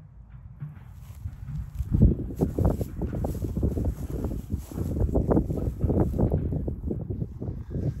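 Cocker spaniel chewing and mouthing a fabric frisbee disc: a fast, irregular run of soft crunches and knocks, getting louder about two seconds in.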